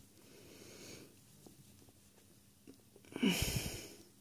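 A person breathing: a soft breath out in the first second, then a louder short sigh-like breath with a slight falling voice about three seconds in.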